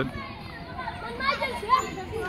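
Children playing and calling out, several faint voices overlapping.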